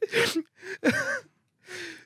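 A man catching his breath as laughter dies down: a sharp gasping breath at the start, a short voiced sound about a second in, and a softer breath near the end.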